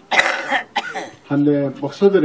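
A short cough lasting about half a second, then a man's voice speaking.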